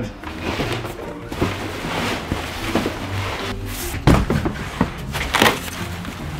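Background music over cardboard box flaps and plastic packing material rustling and scraping as a person climbs into a large box, with a sharp thump about four seconds in and another near the end.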